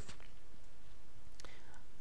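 A pause in a man's narration: steady hiss and low hum from the microphone, with a faint breath near the end.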